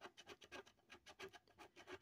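A clear resin scratcher scraping the coating off a scratch-off lottery ticket in quick, short, faint strokes, about six a second.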